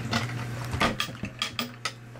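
Handling noise: several light clicks and taps as a smartphone is set down on a hard glossy tabletop and the camera is moved about. A steady low hum runs underneath.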